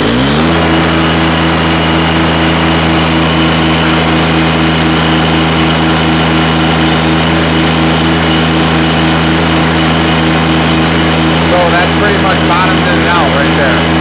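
Kubota BX2380's three-cylinder diesel revving up to full throttle in the first half second, then running steadily at high rpm while the loader lifts a 745 lb load on pallet forks, near its lifting limit.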